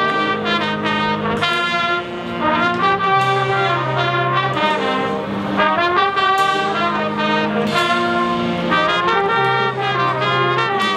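High school marching band playing, with its brass section leading. Held low-brass notes change pitch every second or two under the melody.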